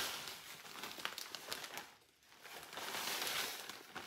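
Plastic bag crinkling as crushed Oreo cookie crumbs are shaken out of it into a mixing bowl. There are two spells of rustling with a short lull about halfway.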